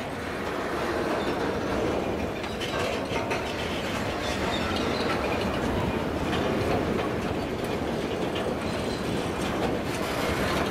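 Container freight train wagons rolling past, a steady rumble of steel wheels on rail with a few clicks over the rail joints.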